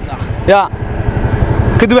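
Auto-rickshaw (bajaj) engine running with a low, rapid, even pulsing, heard plainly in a short gap between a man's words.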